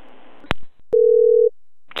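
Phone-line clicks, then a single steady telephone tone lasting about half a second: the ringing tone heard by a caller while an outgoing call connects.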